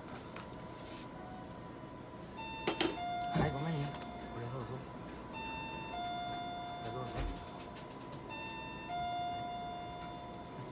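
Electronic two-tone chime, a higher note falling to a longer lower one, sounding three times about three seconds apart over a faint steady tone. A few handling knocks come between the chimes.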